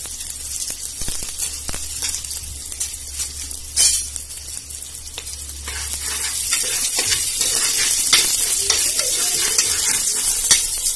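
Chopped ginger, garlic and curry leaves sizzling in hot ghee with mustard seeds and cumin in the bottom of an aluminium pressure cooker, with scattered crackles and one sharp pop about four seconds in. From about six seconds in a metal spoon stirs the tempering and the sizzle grows louder.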